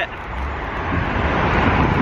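Road traffic: a passing vehicle's engine and tyre noise, building from about half a second in and holding.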